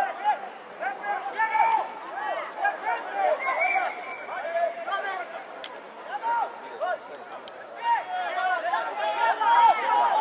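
Men's voices shouting short calls over one another throughout, the way rugby players call during a ruck and a pass, with a few sharp knocks among them.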